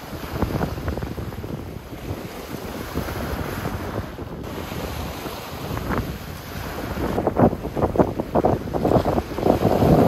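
Small waves breaking and washing over rocks and pebbles at the shoreline, under wind buffeting the microphone. The buffeting comes in rough gusts that grow heavier over the last few seconds.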